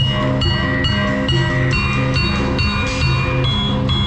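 Javanese gamelan music accompanying jathilan dancing: struck metallophone notes in a steady repeating melody over a continuous beat.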